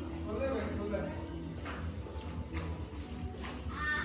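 Several women's voices talking and calling over one another as a crowd of relatives greets each other, over a steady low hum.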